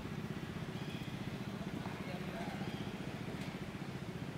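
A small engine running steadily at low revs, with a fast, even pulse.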